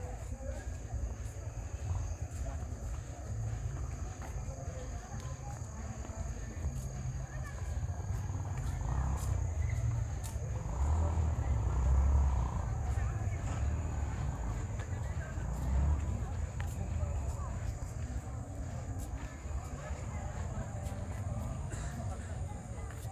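Outdoor night ambience: a low, steady rumble with faint distant voices, swelling louder about ten to twelve seconds in, over a constant high-pitched whine.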